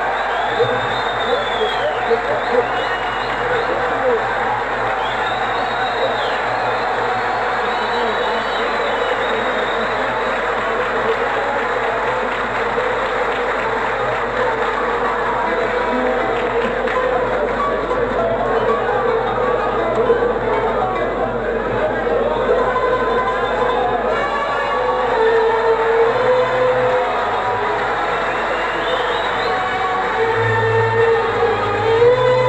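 Old live recording of an Arab orchestra of violins, qanun, oud and double bass playing, mixed with loud audience applause and cheering. The crowd noise thins in the second half and the instruments come forward.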